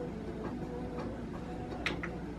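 Faint, regular ticking, roughly two ticks a second, over quiet held tones, with one sharper click near the end. It is the music video's soundtrack playing at low volume.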